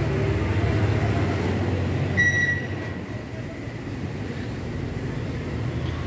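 A vehicle engine running steadily with a low, pulsing rumble, and a short high-pitched beep about two seconds in.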